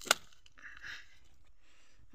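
A single sharp crack just after the start, followed by faint low background sound.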